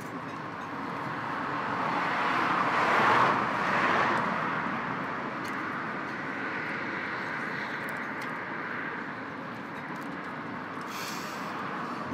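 Road traffic passing close by: a vehicle's noise swells to its loudest about three to four seconds in, then eases into a steady traffic hum.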